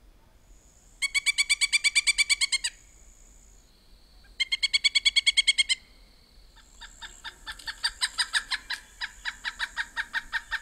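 Pileated woodpecker calling: two quick bursts of rapid, evenly repeated notes, then a longer, slower run of notes that grows louder from about two-thirds of the way in.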